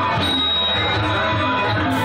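Live Cambodian traditional music from a stage ensemble, with a steady beat and a high held note near the start.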